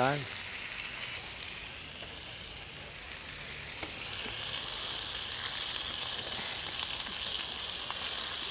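Meat sizzling steadily on a hot braai grill, a little louder from about halfway.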